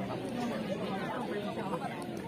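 Indistinct chatter of several people talking at once at the side of an outdoor football pitch, with no single voice standing out.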